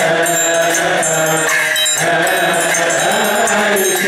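Coptic Holy Week hymn chanted in unison by deacons and congregation, a slow melismatic chant, with a hand triangle struck steadily along with it, its high ringing running over the voices.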